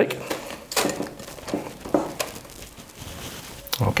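A spoon scraping a thick, sticky fruit-and-nut mixture out of a stainless steel mixing bowl into a cake tin: a few short, irregular scrapes and knocks.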